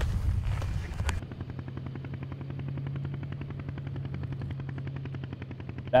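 About a second of rumbling handling noise with clicks, then a steady low hum with a fast, even pulse.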